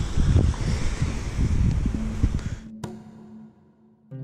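Wind buffeting a camera microphone, cut off suddenly near the end. A single held low note of background music comes in just before the cut and carries on alone.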